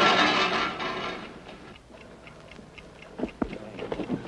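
A loud burst of noise fades away over the first second and a half. Then a cheap wind-up alarm clock inside a wooden box ticks faintly and steadily, about four to five ticks a second, with a couple of knocks from the box being handled near the end.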